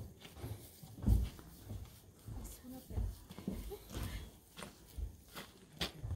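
Faint, indistinct voices with scattered short knocks and low rumbles.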